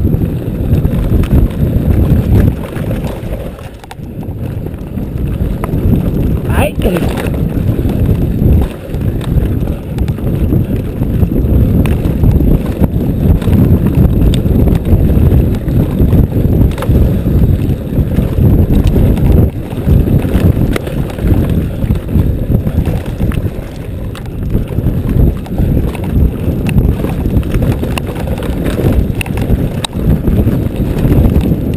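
Mountain bike descending a rough dirt trail at speed, heard from a camera on the rider: a continuous loud rumble of wind buffeting the microphone, mixed with the tyres and frame rattling over bumps and ruts. A brief rising squeal comes about seven seconds in.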